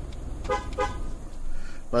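Two short, pitched beeps about a third of a second apart, about half a second in, over a low steady rumble. They are the truck's confirmation chirps as the key fob locks the doors to work the factory remote starter.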